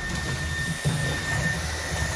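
Dreame T10 cordless stick vacuum running, its floor brush head pushed over a hardwood floor: a steady high whine over a low hum.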